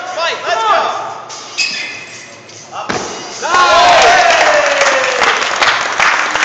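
A gymnast's dismount from the rings landing on the mat with one sharp thud about three seconds in. Shouts of encouragement are heard before the landing, and loud yelling and clapping follow it.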